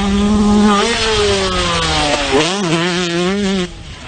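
Dirt bike engine running hard at a steady pitch, then falling in pitch as the throttle is rolled off, before picking up and wavering again. The sound cuts off abruptly shortly before the end.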